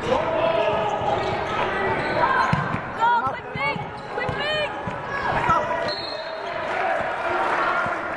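Basketball game on a hardwood gym floor: a ball bouncing on the court, with sneakers squeaking in a quick run about three seconds in and again about a second later. Players' voices call out across the hall throughout.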